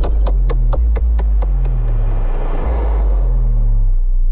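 Electronic logo sting: a deep bass drone with short low notes, a run of sharp ticks about four a second that fade out, and a whoosh that swells and falls away in the second half.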